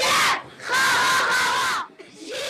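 A group of children shouting a chant in unison: a short shout, then a longer one held for about a second.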